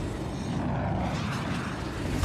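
Movie sound effects of a battle: a steady, dense rumbling roar with debris raining down.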